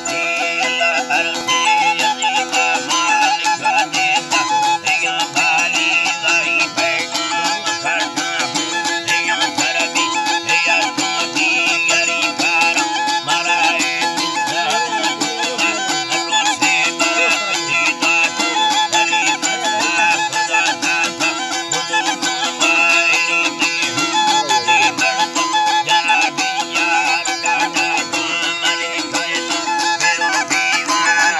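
Live Balochi folk music: a flute melody over a rapidly strummed long-necked lute (dambura), with a steady low drone underneath.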